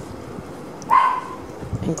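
A dog barks once, a short call about a second in.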